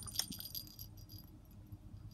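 Faint handling noise: small clicks and a light jingly rattle as hands work a 12-volt adapter plug stuck in a toy's knitted hat, mostly in the first half second.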